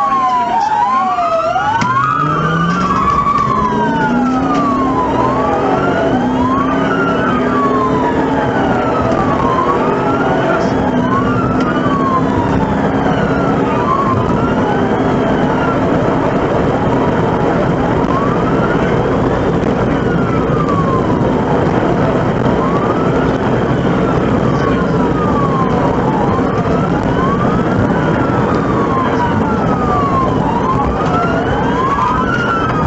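Police car wail siren, rising and falling over and over, with two wails overlapping, recorded from inside the pursuing cruiser. Under it, the cruiser's engine climbs in pitch over the first few seconds as the car accelerates.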